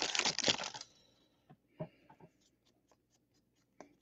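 Baseball trading cards being handled and flipped through: a short rustle in the first second, then a few faint, light clicks.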